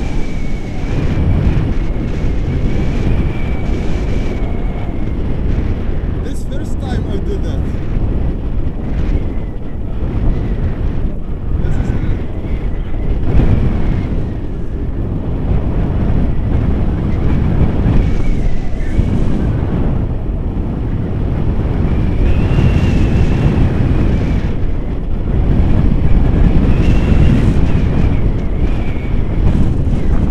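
Airflow buffeting the microphone of a camera carried on a paraglider in flight, a loud, steady rumble with a thin high whistle that comes and goes.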